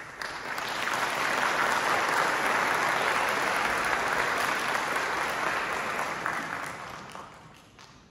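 Concert-hall audience applauding, swelling within the first second, holding steady, then dying away over the last two seconds.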